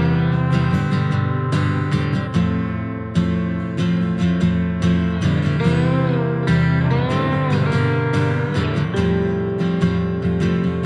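Live worship band playing an instrumental passage: an acoustic guitar strummed in a steady rhythm together with an electric guitar, with a few bending notes near the middle.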